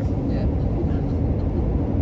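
Steady low rumble of road and engine noise inside a moving vehicle's cabin.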